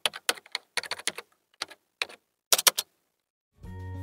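Computer keyboard typing sound effect: a quick, irregular run of key clicks that stops about three seconds in. Background music starts just before the end.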